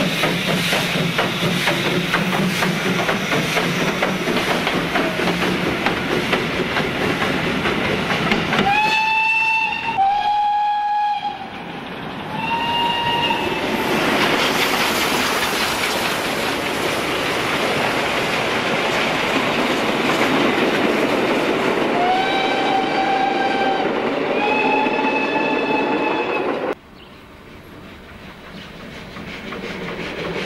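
Steam locomotive with a passenger train running, with a steady rush of exhaust and rail noise, sounding its steam whistle in steady blasts: three shorter ones about nine to thirteen seconds in and two longer ones later. The sound drops off abruptly near the end.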